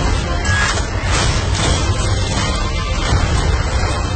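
Film soundtrack from an action scene: a dense, loud mix of rumbling, booming effects with music underneath.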